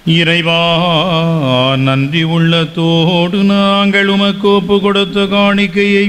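A man's voice chanting a liturgical prayer in long melodic phrases, with wavering held notes and a short break near the end.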